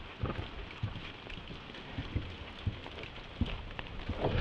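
Steady rain falling on a wet wooden deck, with scattered close drops ticking and a few soft thumps.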